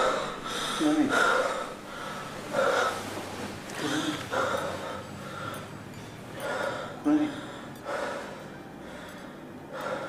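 A person's breathy vocal sounds without words, coming in short bursts about once a second, some of them louder and sharper than the rest.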